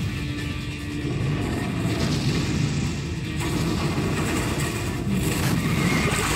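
Monster-film soundtrack: music playing over a deep, continuous rumble.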